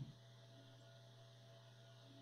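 Near silence: a faint steady electrical hum under the room tone.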